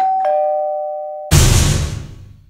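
Edited-in sound effect: a two-note ding-dong chime, high note then lower note, followed about a second later by a loud bass-heavy hit that fades out over about a second.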